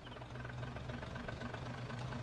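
A steady low mechanical hum with a faint, rapid, regular pulse.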